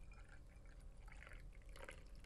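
Strong hot coffee poured from a glass carafe into a stemmed glass: a faint, uneven trickle of liquid.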